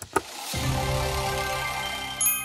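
Cartoon slot-machine sound effect: a sharp click just after the start, then a steady whirring of spinning reels from about half a second in, under held musical tones.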